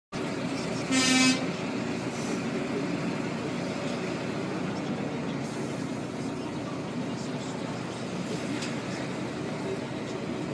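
A vehicle horn sounds one short blast about a second in, over the steady rumble of traffic heard from inside a stopped car.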